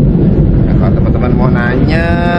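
A man's voice over a loud, steady low rumble of wind buffeting the microphone.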